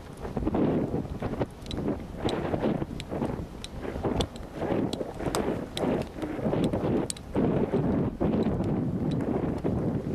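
Wind buffeting the microphone in uneven gusts, with scattered faint clicks.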